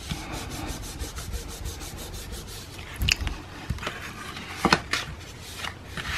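Palms pressing and rubbing over folded cardstock, a steady soft rustle of hand on paper. A few sharp paper knocks come about three seconds in and twice near five seconds as the card is lifted and flipped over.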